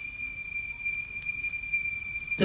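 A lull in a cassette tape's playback of a taped radio mix: low background noise with several steady, high-pitched whine tones and no music or speech.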